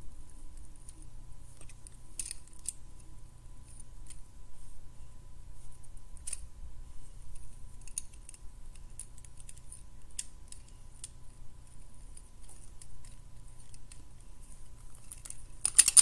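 Small plastic Lego pieces clicking and rattling as they are handled and fitted together, in scattered light clicks, with a louder cluster of clicks near the end.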